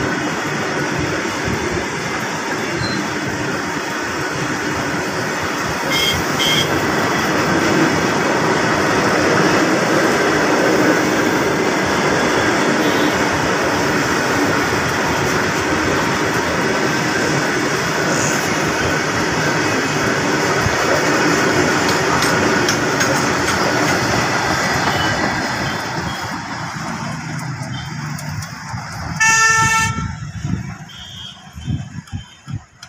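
Freight train's loaded open box wagons rolling past close by, a steady heavy rumble and clatter of steel wheels on the rails. The noise eases off a few seconds before the end as the last vehicle goes by, and just before the end there is one short, loud horn toot.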